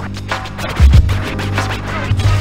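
Instrumental hip hop beat with a bass line and a heavy kick drum hit near the middle, with DJ turntable scratches cut over it.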